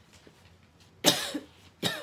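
A woman coughs about a second in, with a second, shorter cough-like burst just before the end.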